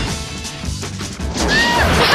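Upbeat cartoon action music with a steady beat, opening with a sudden crash hit; a melody line comes in near the end.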